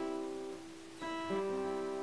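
Acoustic guitar, single notes picked with a flatpick across the third, second and first strings in a bluegrass crosspicking roll. Notes ring and fade, then new notes are picked about a second in and again just after.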